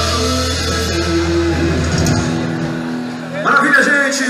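Live band holding out a final chord as a song ends. The bass drops out about two seconds in, and a loud burst of voices comes near the end.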